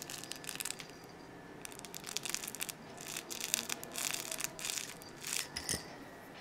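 Soft fabric baby toy rustling as a baby grabs and handles it, in irregular bursts of crinkly noise, a short spell at first and a longer, busier one from about a second and a half in.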